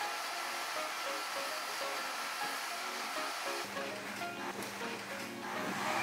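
A handheld hair dryer blowing steadily with a thin whine, under light background music. A low hum joins in a little past halfway.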